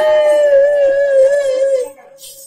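A singer holding one long, loud note into a microphone, the pitch wavering slightly before it trails off near the end.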